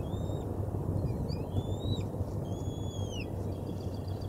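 Three thin, high whistled bird calls: a short one at the start, a rising one midway and a longer falling one near the end. Under them is a steady low rumble.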